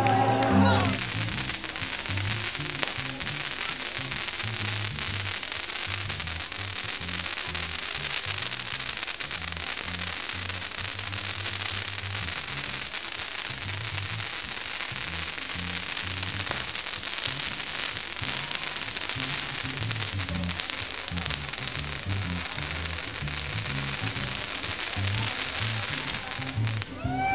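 A long string of firecrackers going off in a continuous, dense crackle of rapid pops, starting abruptly about a second in. Music with a bass line runs underneath.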